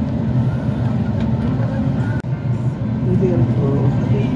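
City bus running, heard from inside the passenger cabin: a steady low engine and road rumble, with passengers' voices in the background near the end.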